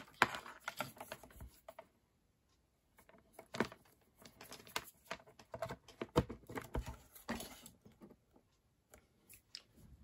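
Ethernet and power plugs being pushed into the ports at the back of an Apple AirPort Extreme router: scattered clicks and knocks of plastic connectors and hands handling the plastic case, with a short pause about two seconds in.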